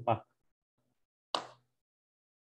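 A voice finishing a word at the very start, then dead silence broken about halfway through by one short pop.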